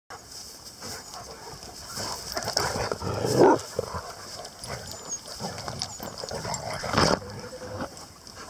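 Staffie-cross dog digging in grassy turf with her nose in the hole: irregular scraping and snuffling, loudest about three and a half seconds in and again near seven seconds.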